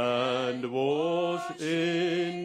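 Slow sung chant or hymn: a single voice holds long notes with vibrato. About halfway through it glides up to a higher note, after a short break for breath.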